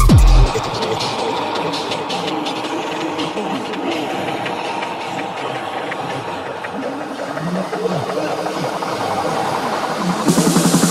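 Breakdown in a fast, hard electronic dance track at 165 BPM. The pounding kick drum drops out about half a second in, leaving a dense, noisy, beatless wash of sampled effects with a few sliding tones near the end.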